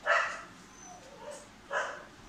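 A dog barking twice in the background, two short barks about a second and a half apart, the first the louder.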